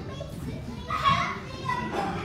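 Children's voices in a large hall, with one high-pitched child's call standing out about a second in over background chatter.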